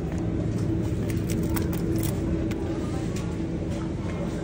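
Steady hum of a supermarket's refrigerated display cabinets, with a few short crackles of plastic food packaging being handled about one to two and a half seconds in.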